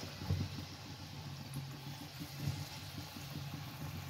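Gram-flour pakoras deep-frying in hot oil in a kadhai: a steady sizzle with many small crackles and pops, over a low steady hum.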